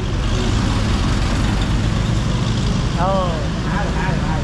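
A car engine running with a loud, steady low rumble, and a brief voice about three seconds in.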